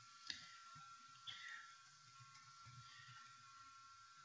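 Near-silent room tone with two faint ticks, the first about a third of a second in and a weaker one about a second in: a stylus tapping on a tablet screen while handwriting.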